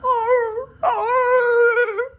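A man's high falsetto whine imitating a frightened dog: two drawn-out whines, the first short and wavering in pitch, the second longer and held steady.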